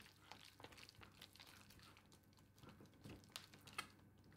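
Faint soft scraping and squishing of a silicone spatula stirring a thick, creamy filling in a stainless steel bowl, with a few light ticks toward the end.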